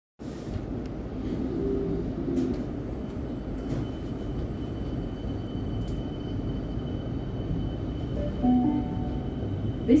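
Suburban electric train running slowly, a steady low rumble of wheels and motors heard from inside the carriage. A faint steady high whine sets in a few seconds in.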